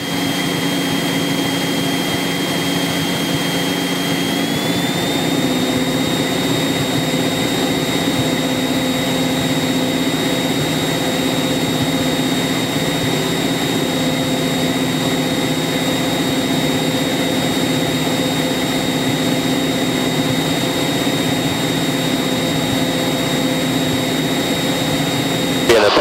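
Cabin sound of a single-engine light aircraft's piston engine and propeller running steadily on a landing approach. A thin high whine within it rises slightly in pitch about four to five seconds in.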